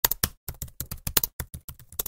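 Computer keyboard typing sound effect: a rapid run of key clicks, about seven a second, that cuts off suddenly.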